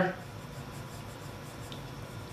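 Staedtler Lumograph B graphite pencil sketching on drawing paper: faint, soft strokes of the lead against the paper.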